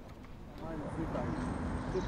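City street ambience: a steady low traffic rumble with faint, indistinct voices, coming in about half a second in.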